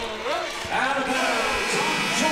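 Speech: a man's voice talking, with no other distinct sound standing out.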